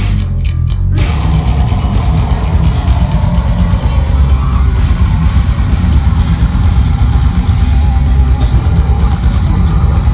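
Death metal band playing live at full volume: distorted guitars, bass guitar and drum kit, with a heavy, boomy low end. The top end drops out for about the first second.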